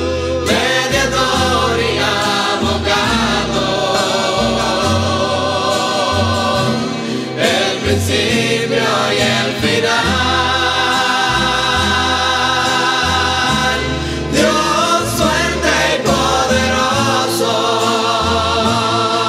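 Christian rondalla music: a choir singing in harmony over guitar accompaniment and a stepping bass line.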